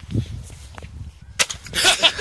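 A snapped wooden skateboard deck half stomped on, giving one sharp crack about one and a half seconds in. Loud laughter starts right at the end.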